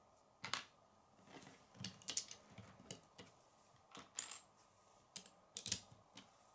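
Plastic Lego bricks clicking and clattering as pieces are handled and pressed together onto a small model, in scattered irregular clicks, the loudest about two seconds in and near the end.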